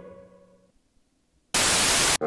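A held tone fades out, and after a moment of silence a loud burst of TV static, the hiss of an untuned screen, starts about one and a half seconds in.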